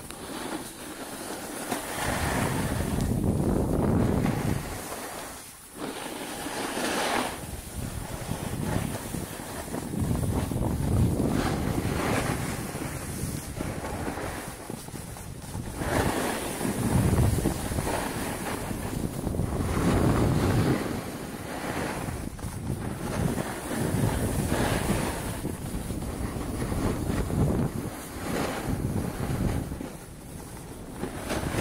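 Wind buffeting the microphone while skiing downhill: an uneven rushing noise that swells and fades every few seconds.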